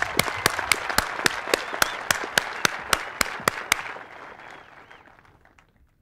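Audience applauding, with some close, sharp individual claps standing out in the clapping. The applause dies away over the last two seconds.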